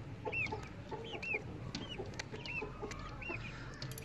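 Chickens clucking softly in short low notes, with repeated short high chirps and a few faint clicks.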